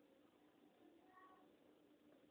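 Near silence: faint room hiss and a low hum, with a brief faint high-pitched tone about a second in.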